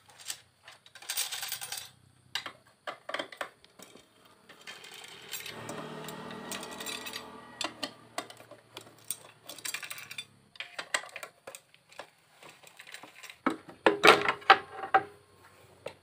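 Metal clicks and clinks of a T-handle socket wrench undoing the bolts of a Honda Vario's CVT cover, with loose bolts clinking. A cluster of louder metallic knocks near the end as the cover is pulled free.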